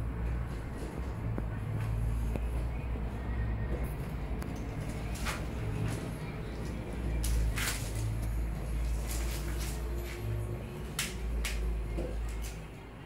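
A kitten tussling with a feather duster on carpet: several sharp rustles and clicks from the duster and its plastic handle, coming in the second half, over a steady low hum.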